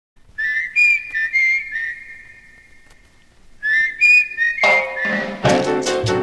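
A high whistle plays a short phrase that ends in a long held note and fades away, then plays the phrase again. A Latin dance band comes in loudly about four and a half seconds in, with bass and a dense band sound.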